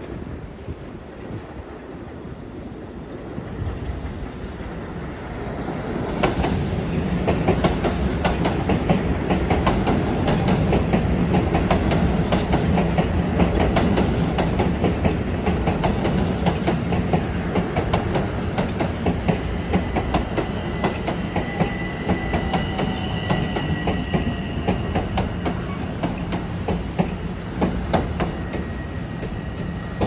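Long Island Rail Road M7 electric multiple-unit train approaching and passing, growing louder over the first six seconds, then a steady run of wheels clicking over rail joints. A faint high whine comes in over the second half.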